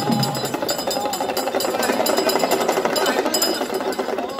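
A fast, steady rattle of festival percussion mixed with the voices of a crowd.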